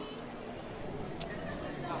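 Small chimes struck lightly about every half second, each leaving a thin, high ringing tone over faint steady background noise.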